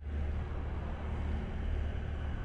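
A steady low rumble with a faint hiss above it, from the anime episode's soundtrack.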